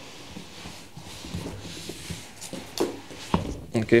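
Large cardboard shipping box being lifted and slid up off an electric unicycle, its sides rubbing and scraping, with a few sharp knocks near the end.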